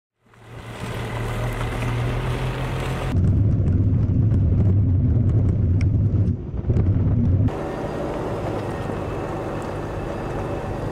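Steady low rumble of a moving vehicle with wind on the microphone. It runs in three cut segments that change abruptly about three and seven and a half seconds in; the middle one is the loudest and has scattered sharp clicks.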